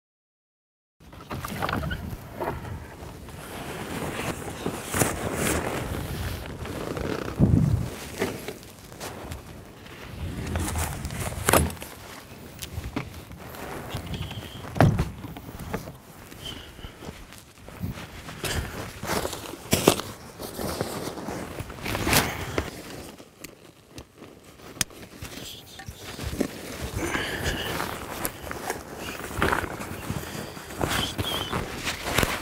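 Irregular clicks, knocks and rustling of gear being handled at a pickup's camper shell side window, with footsteps on dry ground. Several sharper knocks stand out, the loudest about halfway through.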